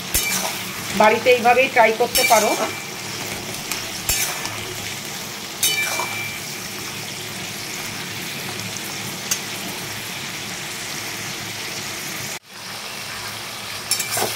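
Giant river prawns frying in hot oil in a kadai, a steady sizzle, stirred with a metal spatula that clicks against the pan a few times in the first half. The sound breaks off abruptly for a moment near the end, then the sizzle returns.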